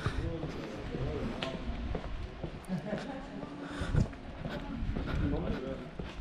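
Faint voices of other people talking at a distance, with a few footsteps of someone walking along a paved street.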